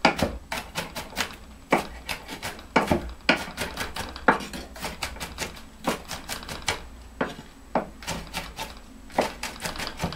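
Kitchen knife chopping vegetables on a wooden cutting board: quick, uneven knocks of the blade striking the board, several a second, some sharper than others.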